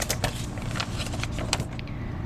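Paper pages of a small booklet being handled and turned, making a run of light crackles and rustles.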